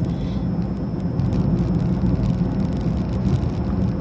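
Steady car cabin noise, a low, even engine hum and rumble heard from inside the car.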